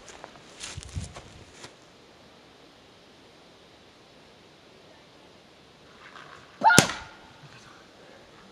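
A single loud, sharp paintball marker shot close by, with a short ringing tail, about two-thirds of the way in. A few soft thuds of movement come in the first second or so.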